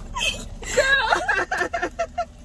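A young woman's high-pitched laughter in quick, breathy bursts, starting just under a second in.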